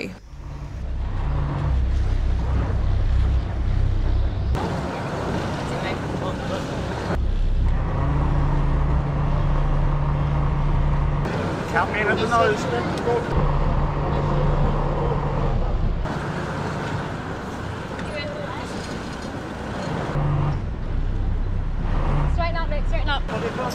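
A sailboat's engine idling with a low rumble and a steady hum, the sound jumping abruptly several times. Brief voices come through twice.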